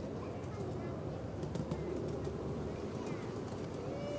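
Steady low rumble of a miniature ride-on train running along its track, with people talking faintly over it.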